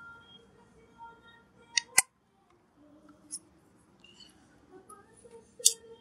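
Handheld lighter being clicked to light brake cleaner on a rubber control-arm bushing: two sharp clicks about two seconds in and a third just before the end, as the flame catches.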